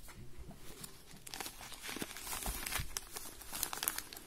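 Plastic packaging of a pack of black plastic seedling grow bags crinkling as it is torn open by hand. It is quiet at first, then the crinkling starts about a second in and grows busier.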